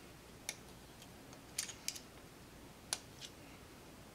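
About five faint, scattered clicks of small parts being handled: metal threaded inserts being fitted into a 3D-printed plastic blaster stock part by hand.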